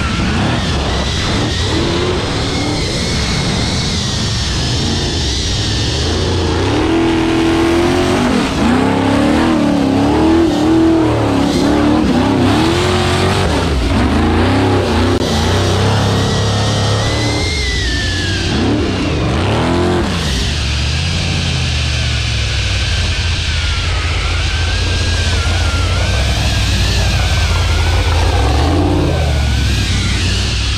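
Rock bouncer buggy's 500 cubic inch big-block Ford V8 revving hard under load on a steep dirt climb, its pitch rising and falling again and again as the throttle is worked.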